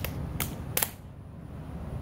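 Three quick, sharp hand slaps, evenly spaced in the first second: fists pounding into open palms to count out a round of rock-paper-scissors.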